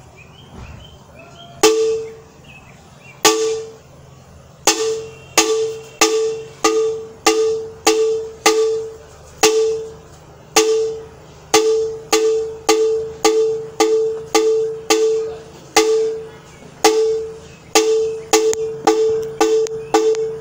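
A hand-held metal gong struck with a stick. Each stroke gives one clear ringing note that fades within about half a second. The first strokes come slowly, about a second and a half apart, starting about two seconds in, then settle into a steady beat of roughly two strokes a second, with a few short pauses.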